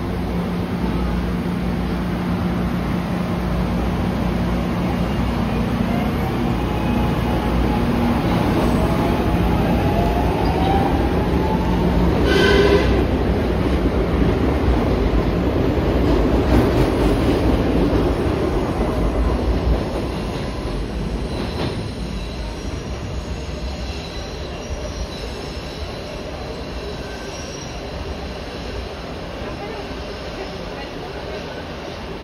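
SEPTA Market-Frankford Line M-4 subway train pulling out of an underground station. Its motors give a rising whine as it gathers speed and the cars rumble past the platform, with a brief high squeal about twelve seconds in. The sound drops off once the last car has passed, about twenty seconds in.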